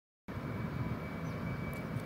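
Steady outdoor background noise, a low rumble with a faint high steady hum, cutting in suddenly after silence a quarter of a second in.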